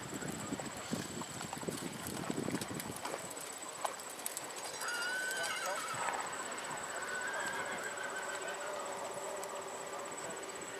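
Dressage horse's hoofbeats thudding softly on sand arena footing over the first few seconds. About five seconds in, a horse whinnies with a wavering call, followed by a fainter, steadier call a second or two later. A steady high insect trill runs underneath.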